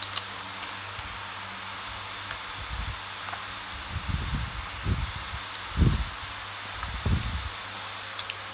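Handling noise on a clip-on microphone: cloth rustling and several muffled low bumps, the loudest about six seconds in, over a steady low electrical hum and hiss.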